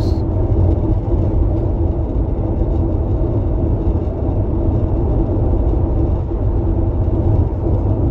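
Steady low road and engine rumble inside a moving car's cabin, with a faint steady hum.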